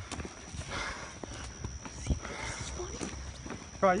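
Footsteps on pavement with scattered small clicks and low rumbling handling noise from a phone carried while walking. A young man's voice starts right at the end.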